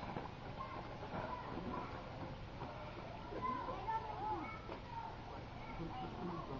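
Indistinct voices talking in the background, with a few short sliding calls a little past the middle.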